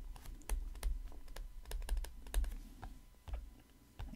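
Stylus tapping and clicking against a tablet screen while handwriting, an irregular run of small clicks several times a second.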